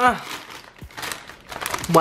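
Crinkling and rustling of a Doritos chip bag and a plastic zip-top bag being handled, in soft irregular bursts.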